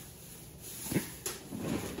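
A kitchen knife knocking on a wooden cutting board as an onion is cut: one sharp knock about halfway through, a lighter one just after, and faint handling sounds.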